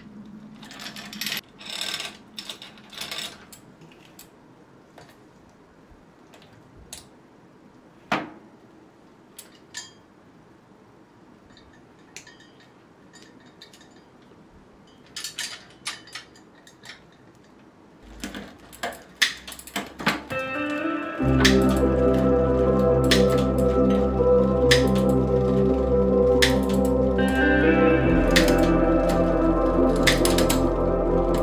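Sharp metallic clicks and short chain rattles as a bicycle chain is threaded through the rear derailleur pulleys and around the chainring. About two-thirds of the way through, loud background music with a heavy bass comes in and covers everything.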